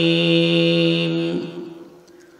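A man's voice in melodic Arabic recitation over a microphone, holding one long steady note that fades out about a second and a half in.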